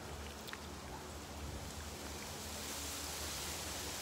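Steady, faint outdoor background hiss with a low hum beneath it, and a faint click about half a second in.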